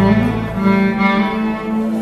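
Fiddle being bowed, playing a tune in held notes that change every few tenths of a second, with steady low notes sounding underneath.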